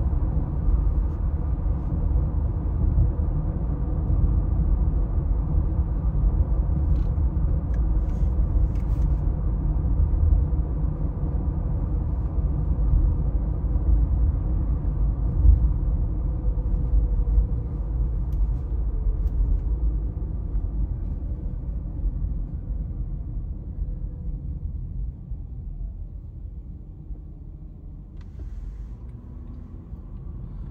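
Engine and tyre road rumble heard from inside a moving car's cabin. It is steady at first, then fades in the last third as the car slows toward traffic stopped at a light.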